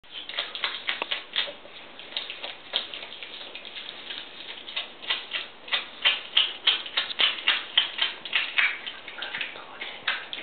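Eurasian otter chewing and crunching a whole raw fish: a quick, irregular run of wet crunches and clicks that grows louder and denser about halfway through.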